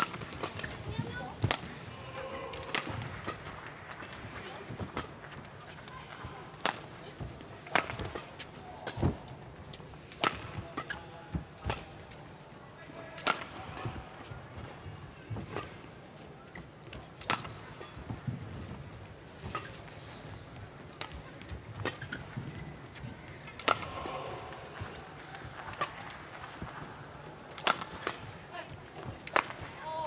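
Badminton rally: sharp racquet strikes on a feathered shuttlecock, about one a second, through a long exchange.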